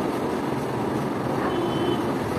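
Steady background din in a restaurant, a continuous rumble-like noise with no distinct clinks or knocks.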